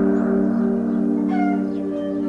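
A steady drone of held low tones, like a background music bed, with a short high gliding cry about one and a half seconds in.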